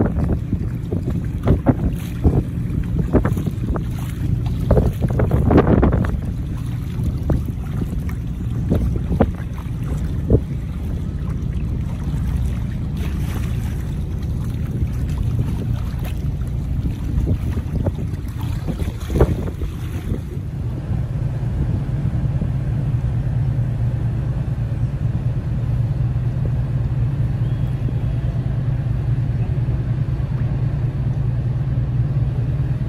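Narrowboat engine running with a steady low rumble while wind gusts buffet the microphone. About two-thirds of the way through, the wind noise drops away and a steadier, lower engine hum remains.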